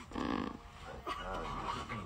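A man's voice mumbling and humming indistinctly into a studio microphone, working out a rap melody without clear words.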